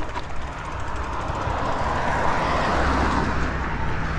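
A car passing on the road, its tyre noise swelling to its loudest about three seconds in and then easing, over a low rumble.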